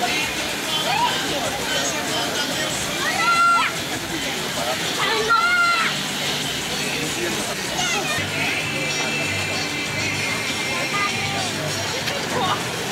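Crowd sounds at a water-park pool: background chatter and children's voices, with two loud high-pitched shouts about three and a half and five and a half seconds in, over background music.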